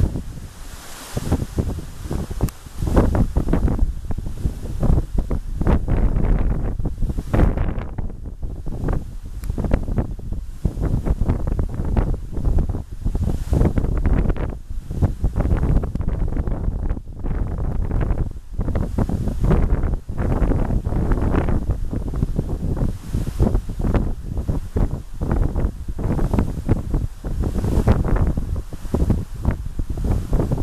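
Wind buffeting the microphone in loud, irregular low rumbling gusts that drown out everything else.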